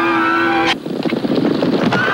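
A held music chord cuts off sharply under a second in. It gives way to the rapid, dense clatter of a team of horses galloping in harness.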